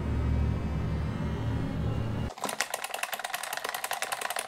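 Low, steady, ominous music drone that cuts off about two seconds in, giving way to rapid clicking as a push button is pressed over and over in quick succession.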